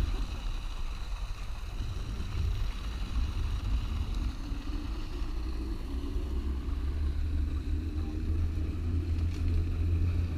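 Wind rumbling steadily on the camera's microphone as the rider glides along a zipline, with the trolley running on the steel cable as a faint high whine.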